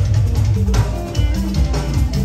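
Live band dance music with guitar playing over bass guitar and a drum kit, keeping a steady beat.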